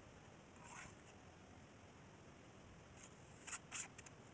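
Hand trowel scraping wet cement in a slab mould, faint against near silence: one soft scrape a little under a second in, then two short, sharper scrapes near the end.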